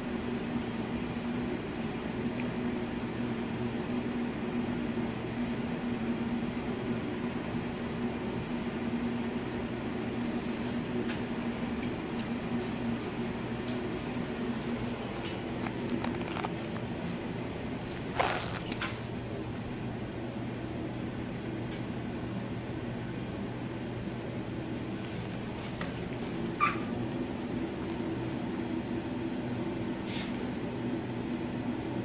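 Steady machine hum of scanning electron microscope lab equipment and air handling, easing in the middle and coming back near the end. It is broken by a few sharp clicks and knocks, the loudest about 18 seconds in, from the sample-exchange valves and controls being worked.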